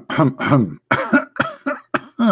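A man coughing repeatedly: a quick run of about five coughs.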